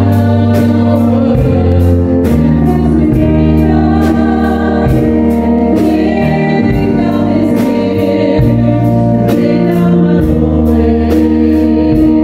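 Live worship band playing a song: voices singing over electric guitar, keyboard and a drum kit keeping a steady beat.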